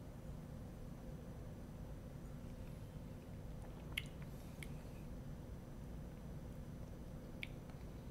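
A faint steady room hum, with a few soft wet mouth clicks from sipping and tasting whisky: two about four seconds in and one near the end.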